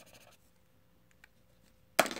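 Felt-tip marker scratching briefly on paper as a zero is coloured in, followed by a few faint ticks, then one sharp click right at the end.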